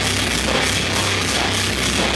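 Live metal band playing loud: electric guitars, bass guitar and a drum kit, with the cymbals struck in a fast, even rhythm over a dense, unbroken wall of sound.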